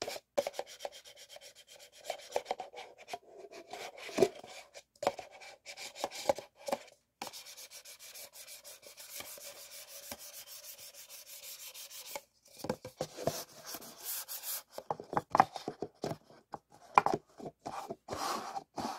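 Paper cups rubbed and scraped against each other by hand in quick, repeated strokes. A fast, even stretch of rubbing fills the middle, broken by a short pause, then sharper separate scrapes and taps near the end.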